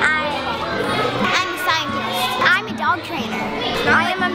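Children's voices calling out and talking, over background music with a stepping bass line.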